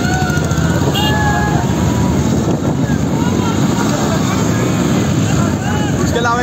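Several motorcycle engines running together as the bikes ride along, a dense steady rumble, with men shouting over it.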